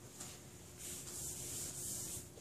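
Whiteboard eraser wiping across a whiteboard: a scratchy rubbing that starts faintly and grows steady and louder from about a second in.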